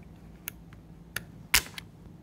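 Small plastic clicks as a door lock actuator's motor is slid out of its plastic gearbox, then a sharp snap about one and a half seconds in as the jammed worm gear and lock mechanism spring free. The motor's too-short shaft had let it bind against the plastic.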